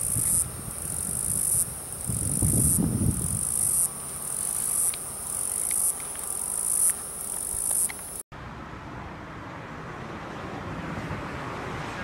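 A high-pitched insect chorus shrilling in pulses of about a second, over low rumbles. It cuts off abruptly about two-thirds of the way through, and a steady rushing outdoor noise follows.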